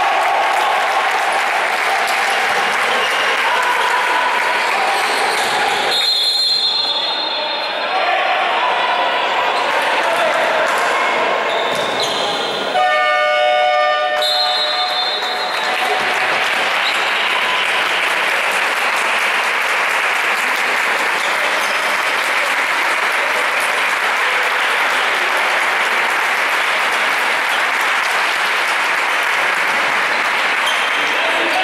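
Sound of an indoor basketball game in an echoing sports hall: basketball bouncing, players' and spectators' voices. A referee's whistle sounds about six seconds in, and a horn blast lasting about two seconds sounds about thirteen seconds in, the kind that marks a stoppage or substitution.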